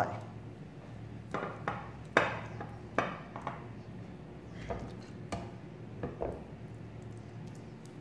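Silicone spatula spreading shredded chicken in a glass baking dish, giving irregular light knocks and scrapes against the glass.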